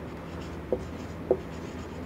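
Marker pen writing on a whiteboard: faint scratching strokes, with two short, sharper squeaks about a third and two-thirds of the way through.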